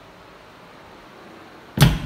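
A single sharp knock against a hard surface near the end, with a short low ring after it, over quiet room tone.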